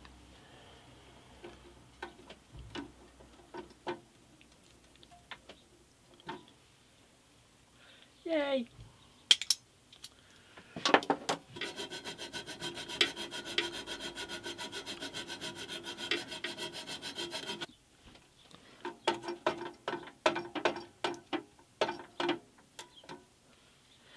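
A hand file rasping on enamelled steel, cutting a groove into the bandsaw's frame housing. A few scattered strokes and a short squeak give way to about seven seconds of steady, buzzing filing, then a run of quick separate strokes near the end.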